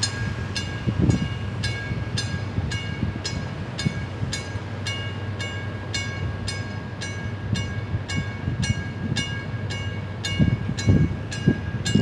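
Drawbridge traffic-gate warning bell ringing steadily, about three strikes a second, with a low rumble of wind on the microphone.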